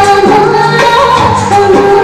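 A Bollywood-style song: a sung melody with long held notes over a full instrumental backing.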